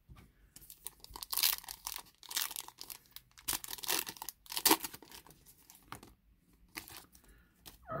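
A foil trading-card pack wrapper being torn open and crinkled by hand, in a series of irregular rips and crackles.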